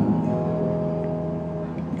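Acoustic guitar chord left ringing between spoken lines, its notes sustaining steadily and slowly fading.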